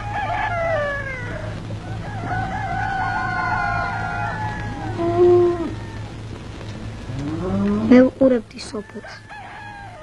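A rooster crowing: a few long, drawn-out crows that fall in pitch at their ends, over a steady low hum. A person's voice comes in near the end.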